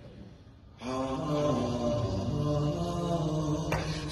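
A male voice begins chanting a Shia lamentation (latmiyya) about a second in, in long held notes. A single sharp knock comes shortly before the end.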